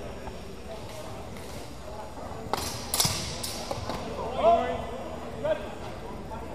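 Steel longswords striking in a fencing exchange: a few sharp clashes and knocks, about two and a half to three and a half seconds in, the strongest ringing briefly. They are followed by a man's short shouted calls.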